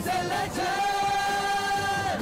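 Choral singing over music: a short sung phrase, then one long held note that breaks off at the end.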